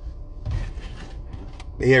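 A man's voice starting to speak near the end, after a short rush of noise and a small click, over a steady low rumble.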